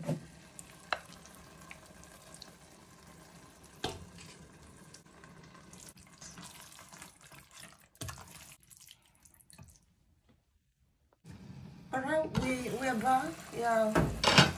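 Faint wet stirring and scraping of a thick eggplant stew in a stainless steel pot with a spatula, with a few light knocks. It drops out briefly past the middle, and a voice comes in near the end.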